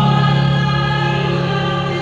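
Choir music with long held notes sung in chords.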